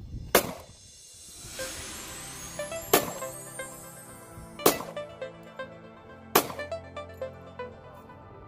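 Four handgun shots, the first about half a second in and the rest roughly two seconds apart, over background electronic music.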